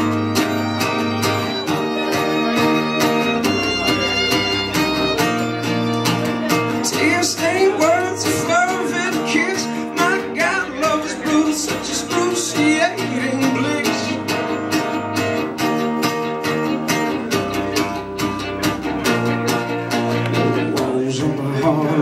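Instrumental break of a live acoustic string trio: a fiddle carries the lead with sliding, bending notes over a strummed acoustic guitar and an upright double bass.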